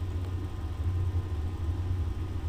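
Steady low background hum, with no other event standing out.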